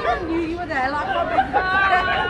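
Women's voices chattering and laughing together.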